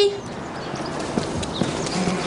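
A few irregular footsteps on a hard paved driveway, light knocks of shoes walking.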